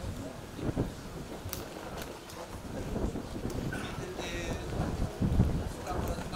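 Wind buffeting the microphone, an uneven low rumble that swells and eases, with a man's voice speaking in places.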